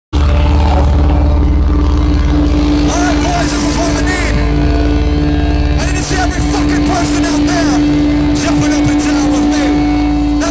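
Loud, phone-recorded live rock concert sound, thick with low rumble from the stage PA, with one steady note held almost the whole time. Crowd voices yell over it from about three seconds in.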